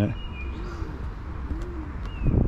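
A pigeon cooing: two low coos about a second apart, each rising and falling in pitch.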